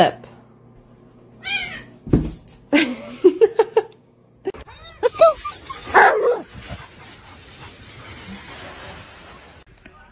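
A domestic cat meowing several times in the first half, with drawn-out, wavering calls mixed with a person's voice. Later comes a steady, quieter rustling noise.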